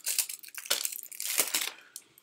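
Plastic shrink-wrap crinkling and tearing as it is pulled off a small deck of game cards: a run of short crackles lasting about a second and a half.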